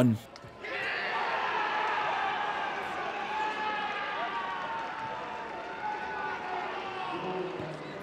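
Football crowd cheering and shouting after a goal, many voices together. It starts about half a second in and holds steady.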